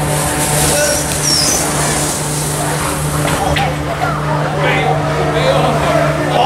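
Hiss of an inflatable snow tube sliding over artificial snow, strongest in the first two seconds, with people's voices and a steady low hum in the background.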